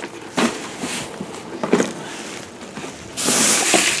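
Rummaging through garbage in a dumpster: things shifting and rustling with a few light knocks, then a louder hissing rustle in the last second.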